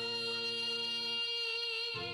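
A woman singing, holding one long note over backing music; the accompaniment drops away about a second in, leaving the held note almost alone.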